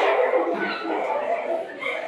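Girls giggling and laughing, high-pitched.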